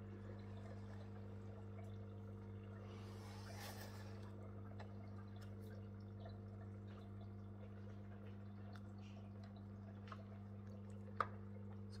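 Faint steady low hum of an aquarium pump, with scattered small drips and trickles of water and a short splashy hiss about three seconds in.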